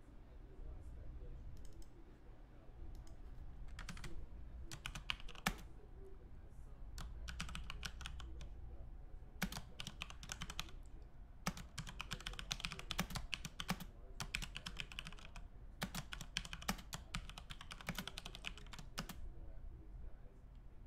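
Computer keyboard being typed on in several bursts of rapid keystrokes, over a low steady hum.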